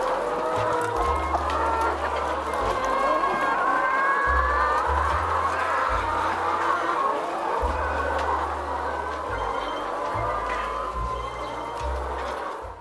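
A flock of caged laying hens clucking and calling together, many voices overlapping in a constant chorus, over background music with a low bass line.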